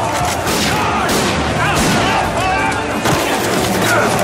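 A burst of gunfire, many shots in quick succession, mixed with people shouting and screaming.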